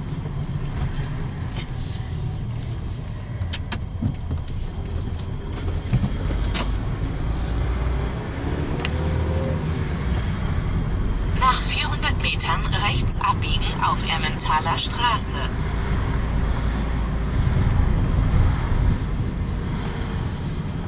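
Car engine and tyre noise heard from inside the cabin while driving slowly through city streets, a steady low rumble. A little past the middle, a higher-pitched, patterned sound plays over it for about four seconds.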